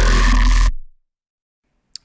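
Dubstep growl bass synth built in Native Instruments Massive, sounding as one loud burst with a heavy low end that stops about three-quarters of a second in and fades away by about a second.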